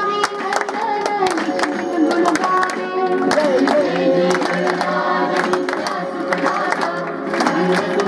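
A crowd singing together with many voices, clapping along.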